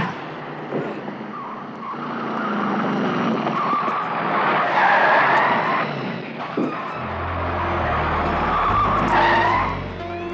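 Car tyres squealing as a vehicle skids and speeds off, the squeal rising and falling; a sharp hit sounds right at the start. A synth bass score comes in about seven seconds in.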